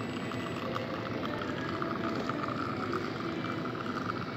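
Espresso machine pump running during an extraction, a steady hum with the hiss of coffee running from the portafilter spouts into the cup.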